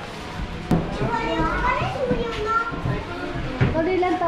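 Children's voices calling and chattering in high, rising and falling tones, over the steady hubbub of a busy street, with a sharp click just under a second in.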